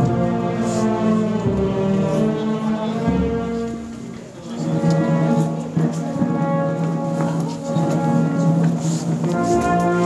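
Brass band playing a slow procession march in sustained chords, with the playing dipping briefly about four seconds in.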